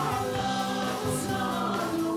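Live Celtic rock band playing, with several voices singing together in harmony over guitars.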